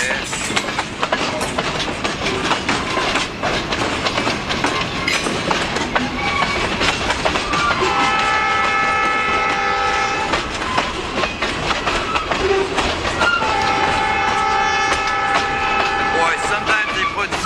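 Loaded freight cars rolling past at close range, their wheels clacking steadily over the rail joints. Twice, about eight seconds in and again near the end, a long steady high tone of several pitches sounds over the clatter.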